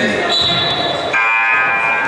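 Gym sounds during a basketball free throw. A steady high tone runs for most of the first second, then a buzzing tone with many overtones starts about halfway through and holds to the end, over voices and court noise.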